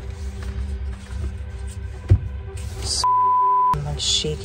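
A censor bleep, a pure steady tone lasting under a second near the end, with the rest of the audio muted while it sounds. Before it there is a low rumble and a steady low hum, with a single knock about halfway through.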